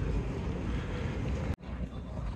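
Wind rumbling on a phone's microphone over open outdoor ambience, cut off abruptly about one and a half seconds in and then resuming.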